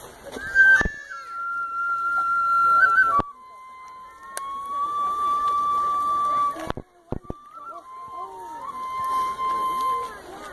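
A solo flute plays the slow introduction to a taiko piece: three long held notes, the first higher, each with small slides in pitch. The sound breaks off briefly twice between them. Faint crowd chatter sits underneath.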